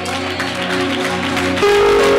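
Electronic keyboard holding sustained chords, moving to a new, louder chord near the end.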